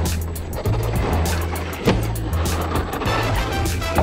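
Background music with a steady beat and bass line. Under it runs the electric motor and geared drivetrain of an FTX Kanyon RC rock crawler as it climbs off a plastic slide onto a rock, with one sharp knock a little under two seconds in.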